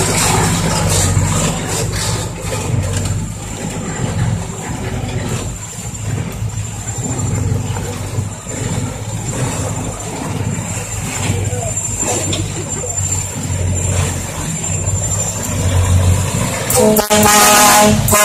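Six-wheel diesel dump trucks running on a dirt road, a steady low engine drone that swells and eases as they move. Near the end a truck horn blows loudly.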